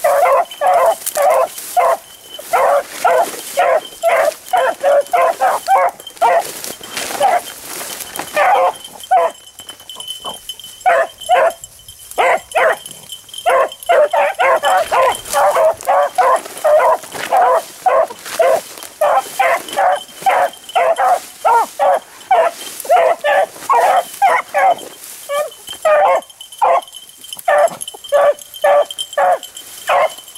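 Beagles baying as they run a rabbit's scent trail, a fast, steady string of short barks several a second, with two brief lulls about ten and thirteen seconds in.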